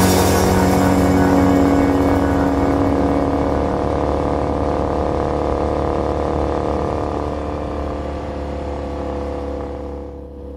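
2015 Triumph Bonneville's parallel-twin engine running at a steady cruise through its TOGA exhaust, slowly fading out.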